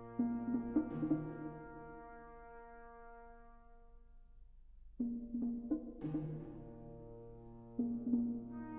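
Small orchestra playing an instrumental introduction: a held brass note with quick sharp strokes over a steady low note. It starts just after the opening, fades away by about the middle, and comes back in with fresh strokes about five seconds in and again near the end.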